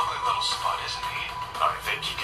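Soundtrack of a TV-style video playing: background music with a steady held high note, and brief scattered voice sounds.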